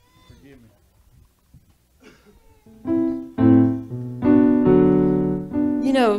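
Keyboard with a piano sound playing slow, held chords that change every second or so, coming in loudly about three seconds in after a few faint words.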